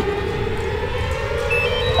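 A sustained tone with overtones, held across the whole stretch and drifting slowly down in pitch, over a steady low rumble.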